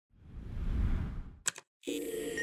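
Logo-intro sound design: a low whoosh swells and fades over about a second, then two quick sharp clicks, a brief silence, and the first sustained piano chord entering near the end.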